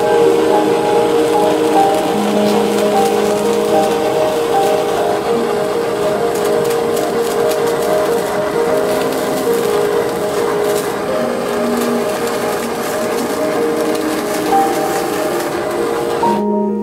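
Soft background music with long held notes, over the steady hiss of a handheld gas torch searing bonito nigiri. The hiss cuts off abruptly at the end.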